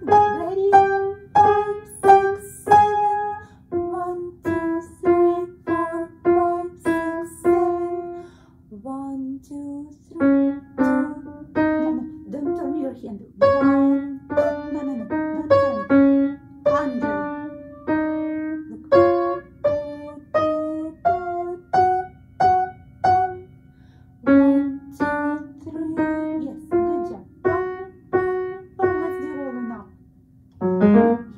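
Upright piano played by a beginner in a slow, simple melody, mostly one note at a time at about one to two notes a second, with a short softer gap about nine seconds in.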